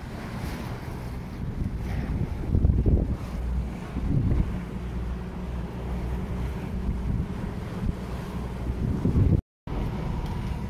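Wind buffeting the microphone over the rush of sea water as a sailboat moves under sail, gusting louder about three seconds in. The sound drops out completely for a moment near the end.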